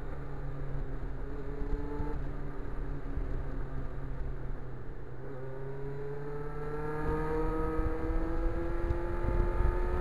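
Kawasaki Ninja motorcycle engine through a Norton muffler, heard from the saddle with wind on the microphone. It runs steadily, eases off about two seconds in, then accelerates from about halfway with a steadily rising pitch, getting louder near the end.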